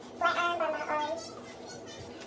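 A high-pitched voice speaking briefly for about a second, starting just after the start, then only low background with a faint steady hum.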